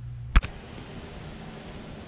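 A single sharp click about half a second in, followed by a steady, even hiss of room tone.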